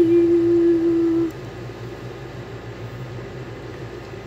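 A woman's voice holding one long sung note that ends about a second in, followed by a steady low hum.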